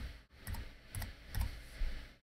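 Typing on a computer keyboard: about four separate keystrokes, spaced a little under half a second apart.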